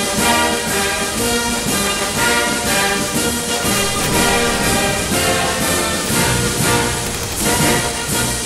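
Brass band march music with a steady beat, played without a break.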